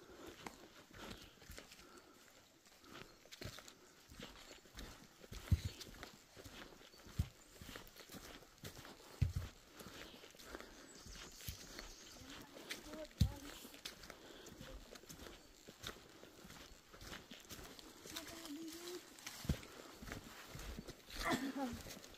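Footsteps on a dirt trail covered in fallen leaves, an irregular run of soft crunches with a few sharp low thumps. A voice exclaims near the end.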